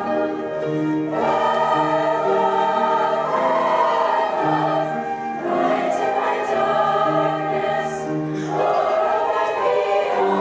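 Girls' choir singing a slow piece in sustained, changing chords, with piano accompaniment.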